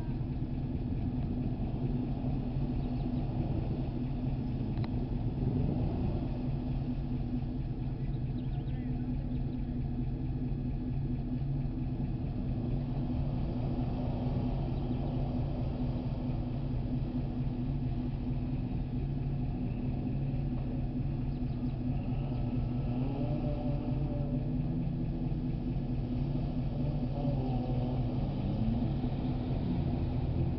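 A vehicle engine running steadily at a low, even speed, with a constant hum.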